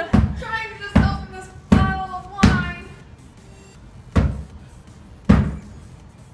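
A wine bottle seated in a canvas sneaker is struck sole-first against a wall six times, each hit a dull thud. The gaps between hits are uneven, with a longer pause after the fourth. This is the shoe trick for knocking a cork out without a corkscrew, and here the cork is not budging.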